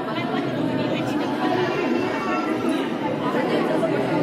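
Crowd chatter: many people talking at once in a steady, dense hubbub of overlapping voices.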